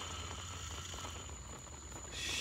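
Faint, steady whir of a motor-on-axle RC rock crawler's electric motors and gears as it creeps slowly up concrete steps, with no sharp knocks.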